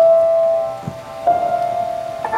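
Piano playing a slow introduction in single held notes: one note struck at the start and a slightly higher one about a second and a half in, each ringing out and fading.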